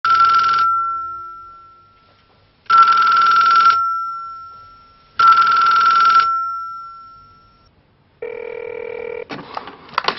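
Ornate antique-style telephone's bell ringing three times, each short ring leaving a ringing tone that fades away; the call goes unanswered. Near the end come a steady tone of about a second, then a few clicks.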